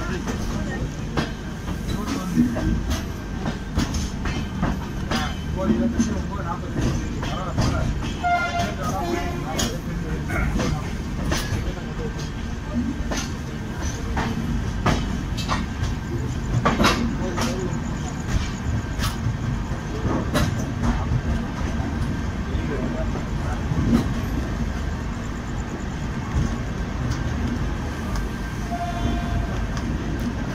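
Passenger train rolling through a station yard, heard from inside the coach: a steady rumble of wheels on rails, broken by irregular clacks and knocks as the wheels run over the track.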